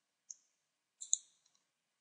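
Computer mouse button clicks: one short click, then a quick pair about a second in.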